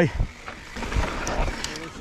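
Downhill mountain bike rolling over a dusty, rocky dirt trail: tyre noise and rattle from the bike, with a dull thump about halfway through and wind on the handlebar-mounted camera's microphone.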